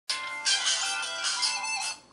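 Mobile phone playing a musical ring tune through its small speaker, cutting off suddenly as the call is answered.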